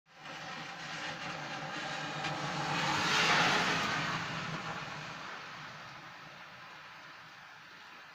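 A car passing on a wet road, its tyres hissing on the water as it swells to its loudest about three seconds in and then slowly fades away, with rain falling underneath.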